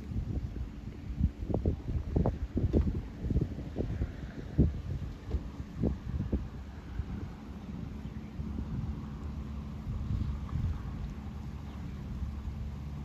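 Wind buffeting the microphone: a low rumble with many sharp gusts over the first half, easing to a steadier rumble after that.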